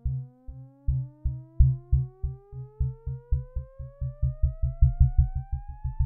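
Synthesized film score: a pure tone slides steadily upward in pitch while low, even pulses underneath speed up from about two or three a second to about four, building tension.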